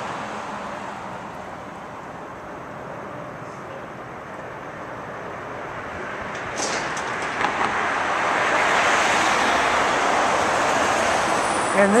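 Street traffic noise, dipping early and then swelling over the second half as a vehicle approaches and passes.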